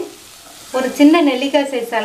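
Masala-coated vegetables sizzling as they are stirred with a wooden spoon in a pressure cooker pan, with a woman's voice coming in about a second in and louder than the cooking.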